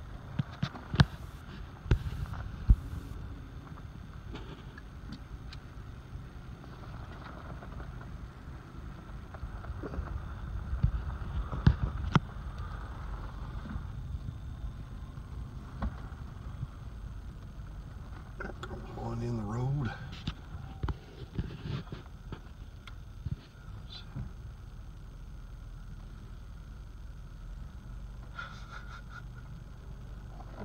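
Low steady rumble of a car idling, heard from inside the cabin, with a few sharp clicks in the first three seconds and again around twelve seconds in.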